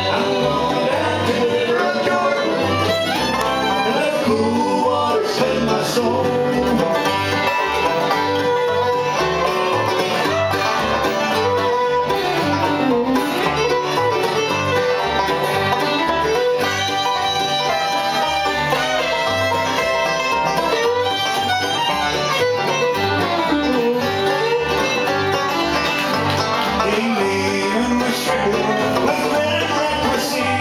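Live acoustic bluegrass band playing an instrumental break: the fiddle takes the lead over a Gibson banjo, a Martin D-18 guitar and a Gibson F-5 mandolin, with the bass pulsing steadily underneath.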